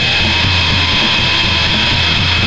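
D-beat raw punk music: a loud, dense wall of distorted band sound with guitars, bass and drums.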